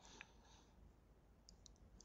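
Near silence: faint room tone with a few small clicks, one just after the start and a quick cluster of three about one and a half seconds in.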